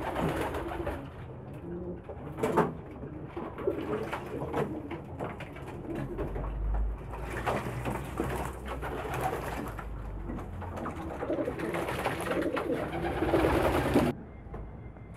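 A flock of domestic pigeons cooing while they bathe together in a shallow basin of water, with frequent quick wing flaps and splashes.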